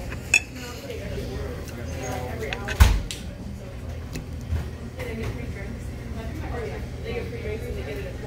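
A metal fork clinking against a plate: a light tick just after the start and one sharp clink about three seconds in, over a murmur of background voices.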